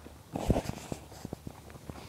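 Footsteps and rustling of people walking through grass and over a dirt track: a short rustling burst about half a second in, then a run of light, quick steps.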